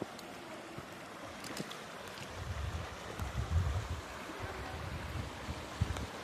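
Outdoor wind buffeting the microphone in uneven low gusts, swelling in the middle and easing again, over a steady faint hiss.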